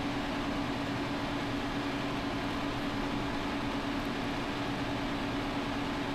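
Steady background hum with an even hiss and one constant mid-low tone, unchanging throughout; the beading itself makes no distinct sound.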